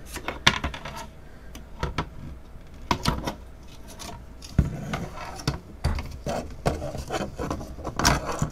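Plastic Apimaye Pro beehive frame being pried apart with a metal hive tool: a string of irregular sharp clicks and snaps as the clipped-together halves pop open, with light scraping of the tool on the plastic between them.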